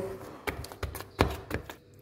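Metal spoon knocking and scraping against the side of a pot while mixing thick mashed potatoes: a few sharp knocks, the loudest a little past the middle, with soft scraping between.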